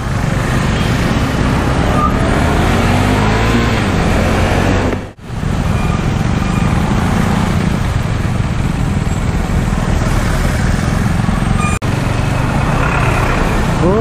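KTM Duke 390's single-cylinder engine running at low speed in traffic, with wind noise on the helmet microphone; the engine note rises as the bike accelerates early on. The sound drops out briefly twice where the clips are cut.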